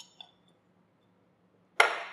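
Metal cover plate coming off a scanning electron microscope's condenser lens housing: two light metallic clinks a fraction of a second apart, with a brief high ring.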